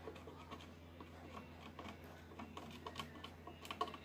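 Faint, irregular small clicks and scratches of fingers handling a TV power-supply circuit board, with a few sharper clicks near the end, over a steady low hum.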